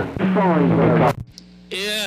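CB radio receiver playing a weak, garbled transmission from a distant station, with a steady hum tone under it. The signal cuts off about a second in, leaving a short stretch of faint static before the next voice comes in.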